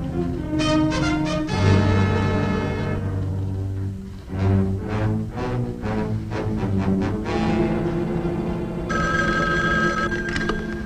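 Orchestral music with sustained low notes. About nine seconds in, a telephone bell starts ringing over it.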